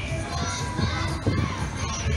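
Children shouting at a funfair over a general crowd hubbub, their voices rising and falling in pitch, with a low rumble underneath.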